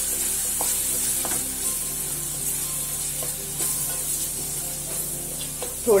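Onion, tomato and ground spices sizzling in hot oil in a metal pot while a wooden spatula stirs them, with a few light scrapes and taps of the spatula against the pot.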